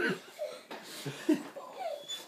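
A few people laughing softly: several short laughs with pauses between them.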